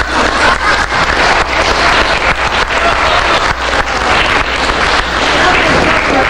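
Audience applauding, many hands clapping together, with some voices mixed in.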